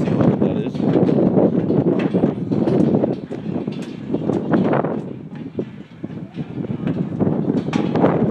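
Footsteps thudding and clattering on the deck of a swinging suspension footbridge, uneven and continuous, with indistinct voices mixed in.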